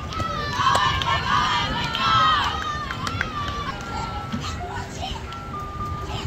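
Girls' voices shouting and cheering, loudest from about half a second to two and a half seconds in, then thinning out.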